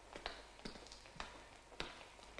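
A few faint, sharp taps, about one every half second, unevenly spaced.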